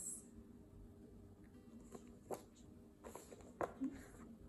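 Quiet room tone with a faint steady hum, broken by a few soft taps and rustles of the paper picture cards being handled.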